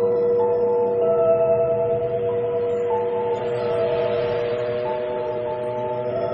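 Tibetan singing bowls ringing: several overlapping sustained tones held steady and slowly fading. A soft hiss swells and then fades in the middle.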